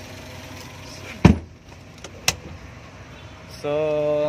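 Suzuki Carry's hinged cab seat over the engine bay being lowered: a heavy thump about a second in, then a single sharp latch click about a second later.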